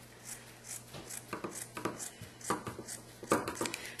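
Scissors snipping through t-shirt fabric to cut off the hem, a run of short, uneven cuts with a quicker cluster of snips near the end.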